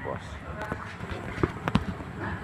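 A few footsteps on gravelly ground, heard as separate short thuds about one and a half seconds in, over a low steady background hum.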